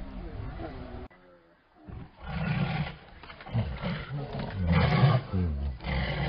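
A tiger roaring in repeated loud bursts that begin about two seconds in, after a brief near-silent gap, with people's voices mixed in.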